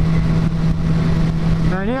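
Suzuki GSX-R sportbike engine running at a steady highway cruise, holding one even note, with wind noise rushing over the helmet microphone.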